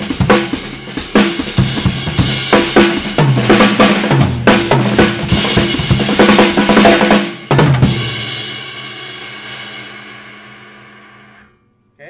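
Acoustic drum kit playing a beat into a fill-in while the foot-pedalled hi-hat keeps running underneath as a time-keeper. Near the end comes one last strong hit, and the cymbals and drums ring and fade away over about four seconds.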